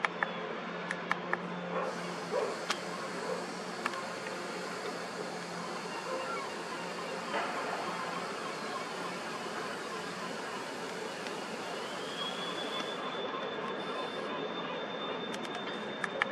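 Steady outdoor background noise with scattered faint clicks. Near the end a high whine rises and then holds steady.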